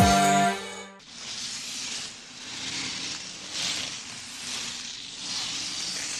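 A short music sting dies away about a second in. Then comes a cartoon sound effect of ice-skate blades scraping over ice, a hissing noise that swells and fades several times with the strides.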